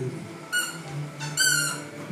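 A squeaky dog toy squeaks twice as the dog mouths it: a short squeak about half a second in, then a longer one near the middle. A song plays underneath.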